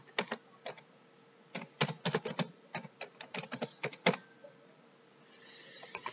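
Computer keyboard being typed on. A few separate keystrokes come first, then a quick run of keystrokes for about two and a half seconds as a short phrase is typed, stopping a little after four seconds in.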